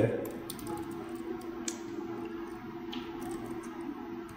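A few scattered keystrokes on a computer keyboard, typing a short word, over a faint steady hum.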